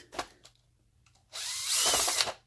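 Cordless drill/driver set to low speed running for about a second near the end, backing a screw out of a battery module cover; its motor whine rises as it runs.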